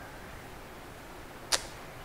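Quiet room hiss, broken once about a second and a half in by a brief sharp swish.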